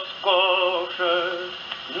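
Male tenor voice singing an opera air with a wavering vibrato, with orchestra, played from a 1937 Odeon 78 rpm record on a portable wind-up gramophone. A few held notes follow one another with short breaks between them.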